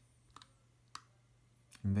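A few sharp computer mouse clicks, about half a second and a second in, against quiet room tone.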